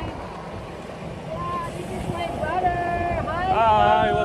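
A man's voice, with long drawn-out pitched notes in the second half, over wind buffeting the microphone.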